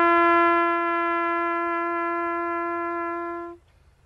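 Solo trumpet playing a slow instrumental: one long held note that tapers off and stops about three and a half seconds in, followed by a brief silence.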